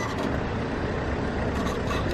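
Steady low rumble of road vehicles in an open car park, with no distinct event standing out.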